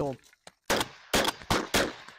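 Shotguns firing a quick volley, four sharp shots a few tenths of a second apart, each trailing off in a short smear of echo.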